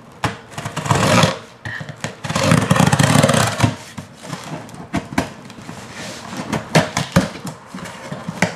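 A cardboard shipping box being cut open with scissors. Two longer stretches of scraping and rustling, about a second in and again around three seconds, are followed by a run of short, sharp snips and clicks.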